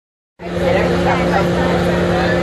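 School bus engine and drive running, a steady droning hum with low rumble heard from inside the passenger cabin, starting about half a second in.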